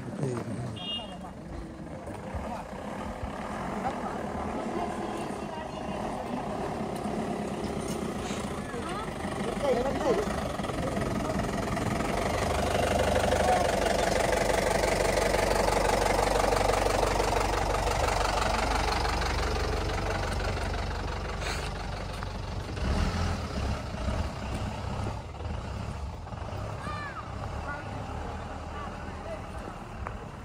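A vehicle engine running, swelling up about ten seconds in, loudest through the middle and fading away after about twenty seconds.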